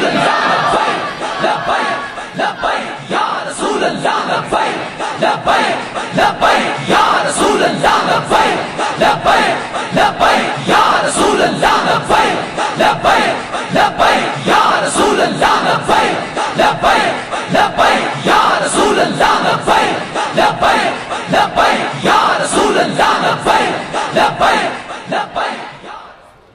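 A large crowd of men shouting religious slogans in unison, with a phrase repeated about every four seconds.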